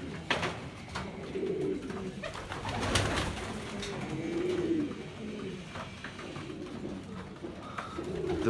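Domestic pigeons cooing repeatedly, with a couple of short sharp clatters among the calls, the loudest about three seconds in.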